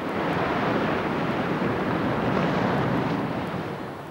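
Small sea waves washing onto a stony beach, a steady hiss that eases slightly near the end.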